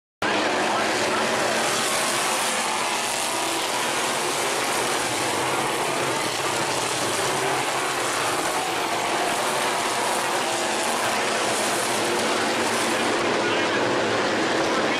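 A field of dirt-track stock cars racing, their engines blending into one steady, continuous noise. The sound drops out for a split second right at the start.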